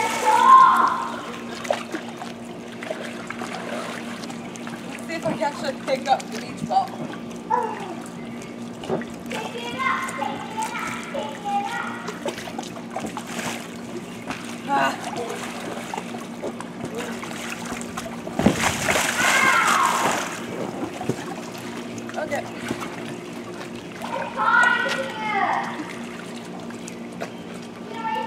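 Pool water splashing and sloshing around a transparent water-walking ball as a child moves inside it, with short bursts of a child's voice at times. A steady low hum runs underneath.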